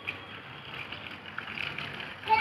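A small child's bicycle with training wheels rolling over rough concrete: a faint, steady rolling noise with small clicks.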